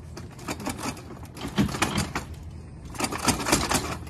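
Ambulance stretcher's metal frame and legs clattering and clicking in three bursts as the crew lifts and adjusts its height.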